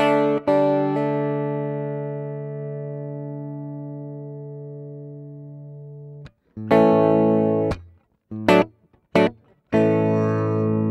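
Electric guitar played through a T-Rex Soulmate pedalboard, recorded direct: a chord is struck and left to ring out for about six seconds. Then comes a short held chord that is cut off, a couple of clipped stabs, and a new chord ringing near the end.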